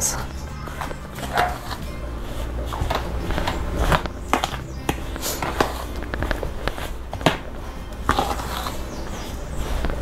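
A metal spoon scraping and clicking against a stainless steel mixing bowl as it stirs a dry, crumbly dough of cornmeal, flour and margarine. Short irregular scrapes over steady background music.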